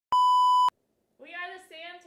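A steady television test-pattern tone, the beep that goes with colour bars, lasting about half a second and starting and stopping abruptly. About a second later a voice begins.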